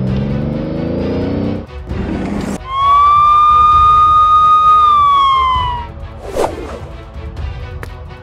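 A car engine revving up, rising in pitch, then a police car siren holding one long note for about three seconds before it drops away.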